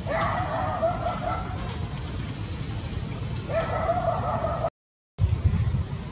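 Two drawn-out animal calls, each a steady pitched cry lasting about a second, the second rising at its start, over a steady low rumble. The sound cuts out for half a second near the end.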